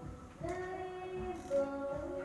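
Music: a high singing voice holding long notes, changing pitch about once a second.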